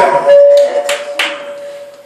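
A single held musical note, steady in pitch and fading away over about a second and a half, with two short sharp hits about a second in.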